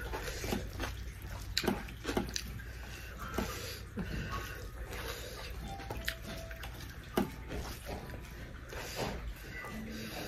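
Fingers mixing rice and dal on a steel plate: scattered small clicks and wet squishing, over a steady low hum.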